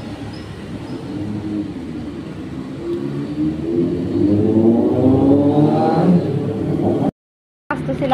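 A motor vehicle engine runs with a steady low hum, then revs up over about three seconds with its pitch rising, before the sound cuts off suddenly near the end.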